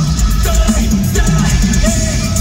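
A heavy metal band playing live through an arena PA, recorded from the crowd: pounding drums and bass under a repeating high held note.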